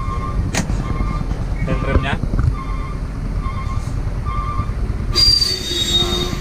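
Steady low rumble inside a truck cab, with a short soft beep repeating about once a second. Near the end comes a loud hiss with a high squeal in it.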